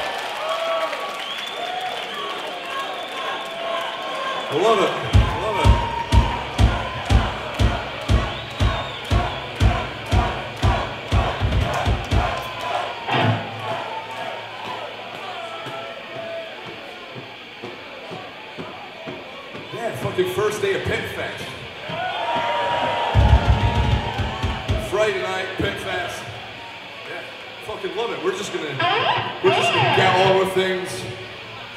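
Concert crowd cheering and shouting between songs. For several seconds a bass drum beats steadily at about two hits a second under the crowd, and a shorter run of kicks comes later.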